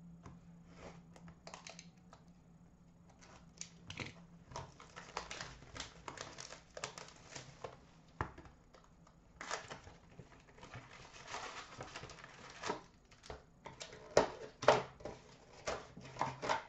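A sealed box of hockey card packs being unwrapped and opened by hand: crinkling plastic wrap and rustling cardboard, quiet for the first few seconds and then a dense run of crackles. Packs are handled, with a few sharper knocks near the end.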